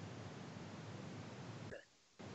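Faint steady hiss of an open audio line between speakers, cut by a short sound near the end and then a moment of silence.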